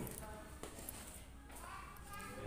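Faint background voices and room noise, with one light tap about two-thirds of a second in.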